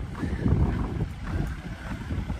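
Wind buffeting the microphone, an irregular low rumble that rises and falls in gusts.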